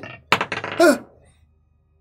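A die clattering onto a tabletop in a few sharp clicks as a saving throw is rerolled, followed by a short groan that falls in pitch.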